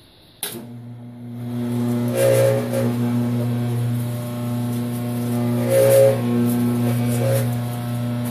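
Metal-cutting bandsaw switched on with a click about half a second in, its motor hum building over the next second and then running steadily as the blade cuts steel angle iron, with a higher tone swelling briefly a few times.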